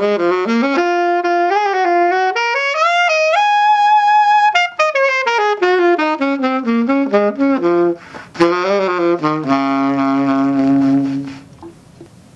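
Jupiter 769GL alto saxophone played solo: a jazz phrase that climbs to a held high note about four seconds in, then runs back down, and finishes on a long held low note shortly before the end.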